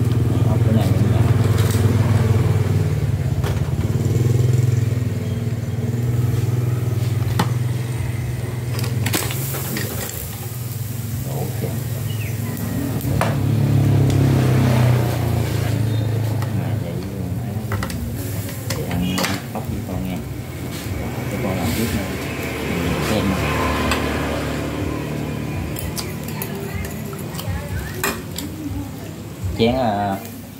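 A steady low motor hum, strongest in the first half and fading after about sixteen seconds, with voices in the background. A few sharp metallic clicks come near the middle and near the end.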